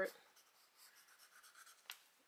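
Sharpie marker colouring on paper, faint scratchy rubbing strokes, with a single short click near the end.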